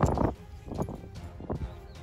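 Metal coins clinking and jingling as a chain hung with coins is handled and a loose coin is picked up off a rock: a loud jangle at the start, then a couple of lighter clinks. Background music plays underneath.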